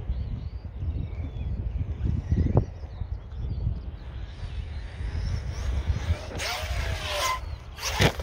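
A low rumble, then about six seconds in the Arrma Outcast 6S RC truck's brushless electric motor and drivetrain whine loudly in two bursts, the pitch gliding up and down as the truck drives close.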